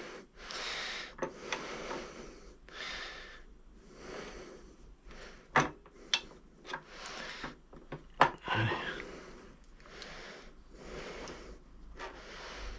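A man breathing steadily close to the microphone, a breath every second or so, while he fits a steel bolt through a scooter's suspension bracket; a couple of sharp metal clicks from the parts come in about halfway through and again later.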